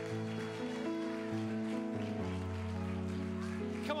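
Soft background music of sustained keyboard chords, shifting to new chords a couple of times.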